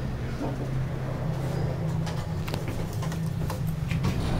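Steady low hum inside an Otis gearless traction elevator cab as it reaches the ground floor, with a few faint clicks.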